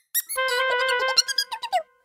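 A short cartoon music cue: a quick squeaky slide, then a held chord with short plucked notes over it, stopping shortly before two seconds.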